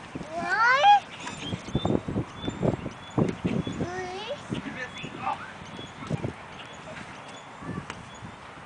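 A toddler's high-pitched rising squeal about half a second in, followed around four seconds in by a shorter sing-song vocalisation, with scattered light knocks as she crawls on the playground deck.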